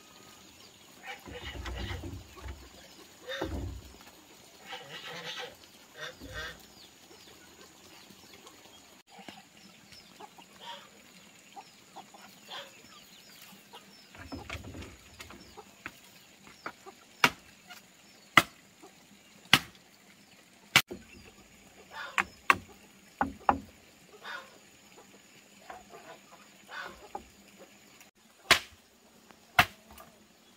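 A digging tool striking hard earth in a series of sharp chops, roughly one a second in the second half, after softer scraping and handling noises. A thin steady insect whine runs underneath.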